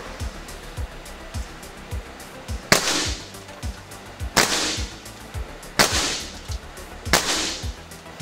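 Four shots from moderated Air Arms S510 XS Tactical .22 PCP air rifles, each a sharp crack with a brief echo, about a second and a half apart, over background music with a steady beat.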